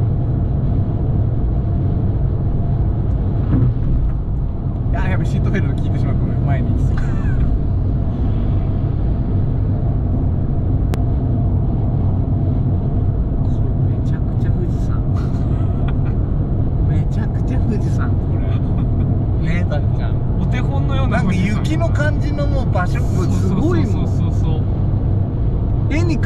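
Steady low drone of engine and tyre noise inside a Fiat 500 1.2's cabin, cruising at expressway speed.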